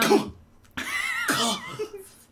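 A person coughing twice: a short cough right at the start, then a longer one lasting about a second.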